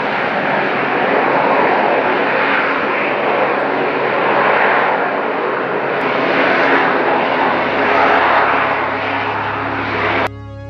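AV-8B Harrier II jump jet hovering, its Rolls-Royce Pegasus vectored-thrust turbofan giving a loud, steady jet noise that swells and fades about every two seconds.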